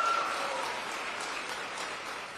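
Audience applauding, fading steadily.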